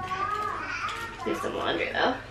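A young child's high voice talking and calling out, the pitch sliding up and down.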